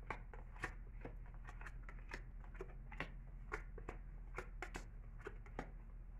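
Tarot cards being handled and laid down on a table: a string of soft, irregular clicks and taps, over a steady low hum.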